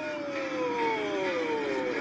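A long, drawn-out voice sliding slowly down in pitch over a steady background hiss.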